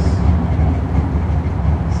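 Loud, steady low engine rumble from drag-racing cars, with no sharp events.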